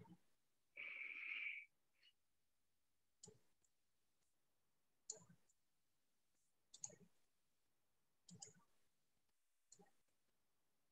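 Near silence on an open video call: a short breathy hiss about a second in, then four faint clicks spaced a little under two seconds apart.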